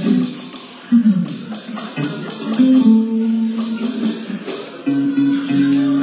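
Live guitar playing slow, held chords, with a voice heard over it.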